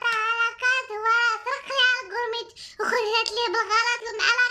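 A young woman's voice, high-pitched and sing-song, talking or chanting almost without pause, with a short break before the third second.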